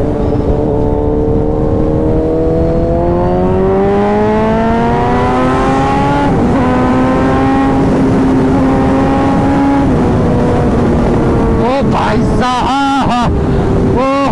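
Sport motorcycle engine under hard acceleration. Its pitch climbs steadily for about six seconds, steps at a gear change, holds high, then eases off about ten seconds in. A voice calls out near the end.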